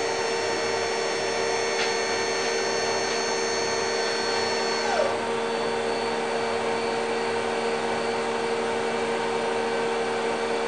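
Linde L12 LAP electric stacker running its lift motor and hydraulic pump as the forks rise, a steady electric whine and hum. The higher part of the whine cuts off about five seconds in with a brief falling note as the lift stops, leaving a steady hum.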